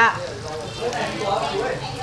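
Turmeric fish (cha ca) frying in a pan on a tabletop burner: a low, steady sizzle under faint voices.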